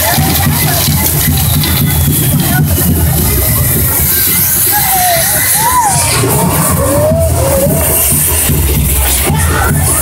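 Castillo fireworks tower burning: hissing and crackling with scattered sharp cracks, under loud music with heavy bass and crowd noise. A few short rising-and-falling whistles come about five to eight seconds in.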